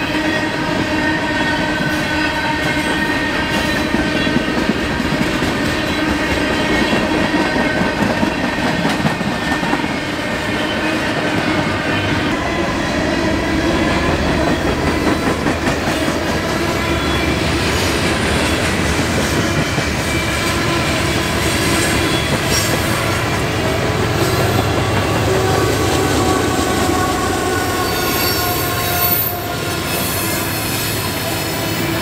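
Freight train of tank cars and covered hoppers rolling past close by. The wheels squeal in several steady high tones over the rumble and clatter of the cars, and a mid-train diesel locomotive goes by.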